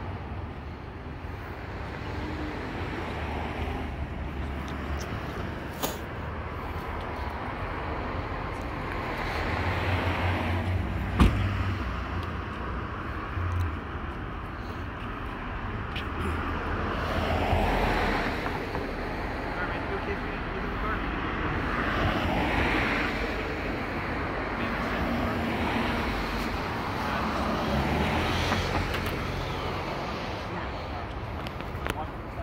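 Road traffic: cars passing one after another, each swelling and fading over a couple of seconds, over a low steady rumble. A single sharp click about eleven seconds in.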